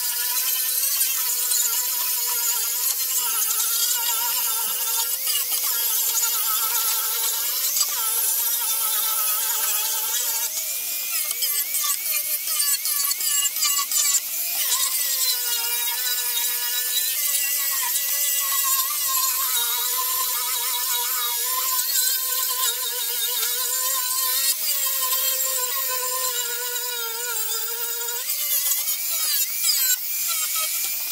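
Electric angle grinder fitted with a sanding disc, sanding the wooden slats of a pallet chair: a steady motor whine over a hissing rasp of abrasive on wood. The whine wavers and shifts in pitch for a few seconds in the middle as the disc is pressed and moved across the boards, then settles again.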